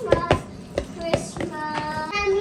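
Wooden spoon stirring a minced-pork stuffing mixture in a mixing bowl, knocking against the bowl about six times in two seconds, with a child's voice in the background.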